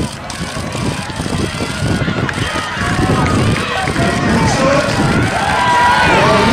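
Spectators shouting and cheering during a sprint race, many voices at once, growing louder toward the end.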